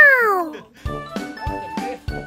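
A French bulldog's single yelp, rising and then falling in pitch, loud and over about half a second in, followed by background music with a steady beat.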